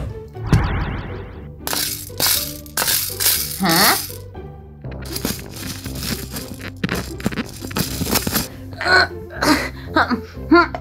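Background music runs throughout. About half a second in there is a short magic-wand sparkle sound effect. Then small plastic beads rattle and clatter in a plastic tray for several seconds, in repeated bursts.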